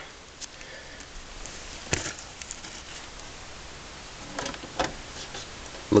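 Handling noise: a few light knocks and clicks, the sharpest about two seconds in and a small cluster near the end, over a steady hiss.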